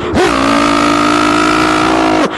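A kabaddi commentator's drawn-out shout: one long, loud held note that swoops up into place at the start and drops off just after the end.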